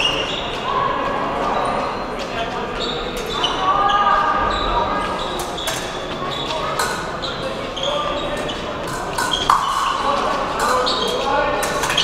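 Fencing footwork on the piste: two épée fencers' shoes tapping, stamping and squeaking as they advance and retreat, a steady run of quick sharp steps, over a background of voices in a large hall.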